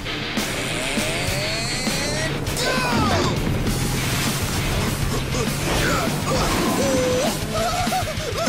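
Rock music over the sound effects of a cartoon vehicle speeding along: a dense, steady rushing noise with crashing hits. Several short rising and falling yells come through from about two and a half seconds in.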